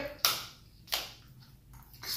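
Eating noises at a table: two sharp clicks about two-thirds of a second apart, then a fainter one near the end.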